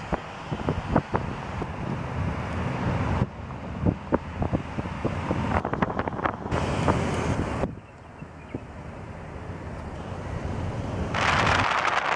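Road noise and wind buffeting the microphone from a moving car, with scattered light knocks. The noise changes abruptly a couple of times and grows louder and brighter near the end.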